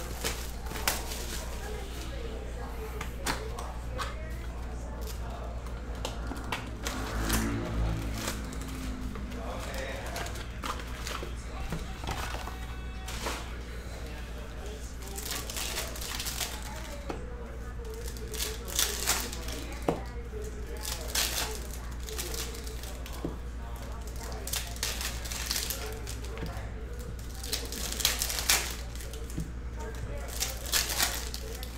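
Foil trading-card pack wrappers crinkling and tearing as packs are opened, and cards being handled, in short scattered crackles over a steady low hum.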